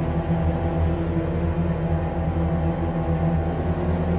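Dark, tense orchestral music from a sampled virtual string orchestra. Low strings play rapid repeated notes under held chords.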